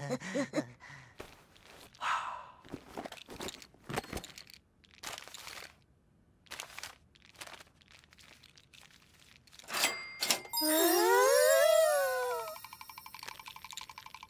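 Scattered soft clicks and rustles of cartoon sound effects, then near the end a brief high tone followed by a long cartoon-voice 'ooh' that rises and then falls.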